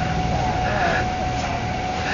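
Outdoor background noise: a steady low rumble under a constant thin high whine, with faint distant voices.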